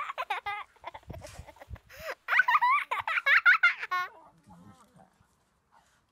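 American Akitas, a puppy and an adult, making high-pitched squealing play vocalizations while wrestling, in quick wavering runs at the start and again from about two to four seconds in, with a few soft knocks of scuffling between.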